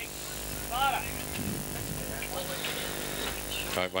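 Open-air ambience at an Australian rules football ground: a steady hiss with faint, distant voices of players and onlookers, one call rising and falling about a second in.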